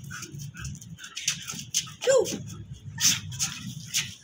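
A dog gives one brief whine, rising then falling in pitch, about halfway through, amid scattered clicks and scuffs as the dogs play.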